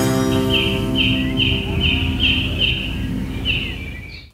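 End of a musical segment jingle: a held chord rings out under a run of short bird-like chirps, about two or three a second, with a pause before the last one, then fades away.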